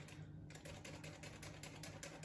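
Metal hand flour sifter being worked quickly over a bowl, its mechanism making a fast run of light clicks, with a brief pause near the start.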